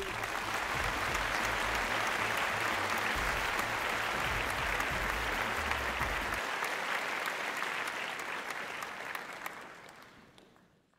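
Audience applause: a dense, steady patter of clapping that fades out over the last couple of seconds.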